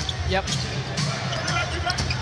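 Basketball being dribbled on a hardwood court, a few short thuds about half a second apart, over arena crowd noise.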